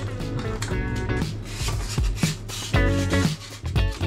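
Background music made of short pitched notes at a regular pace.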